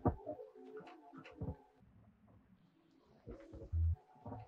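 Electronic noise improvisation from a small hand-played electronic box: sparse sharp clicks and short wavering tones, a quieter stretch midway, then a brief deep low tone just before the end.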